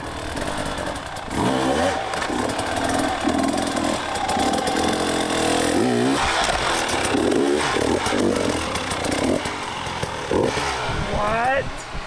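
Enduro dirt bike engine revving up and down in repeated throttle blips as it picks its way over logs and a pile of tires, with several sharp rising revs near the end.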